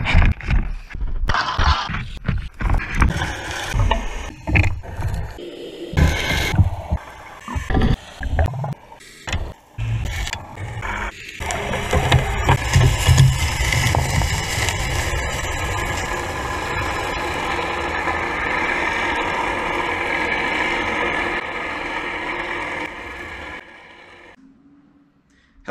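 A galvanized steel Spade S60 anchor and its chain splashing into the water off a sailboat's bow, with irregular knocks and splashes. About halfway through, the sound turns to a steady underwater drone of the boat's engine and propeller pulling the anchor into the seabed to set it, fading just before the end.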